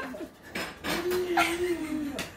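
A toddler's long, steady hum-like voice, held for over a second, with a few short smacking sounds.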